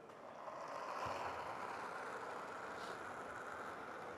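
Granite curling stone being delivered and sliding over the ice, a steady rumble that swells about half a second in and then holds.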